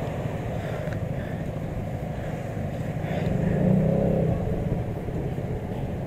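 Motorcycle engine running steadily with a low rumble, swelling louder a little past halfway through.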